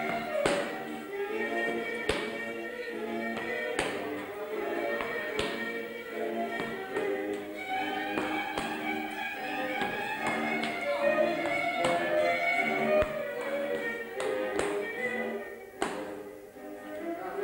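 Fiddle-led Transylvanian folk dance music, with sharp strikes of a dancer's boots, slaps and stamps, cutting through it at irregular intervals, more often near the start and the end.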